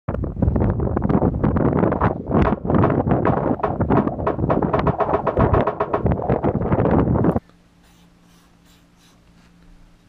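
Loud, gusty wind buffeting the microphone, which cuts off suddenly about seven seconds in. It gives way to a quiet room with a steady low hum, and near the end a felt-tip marker scratches on a paper luggage tag.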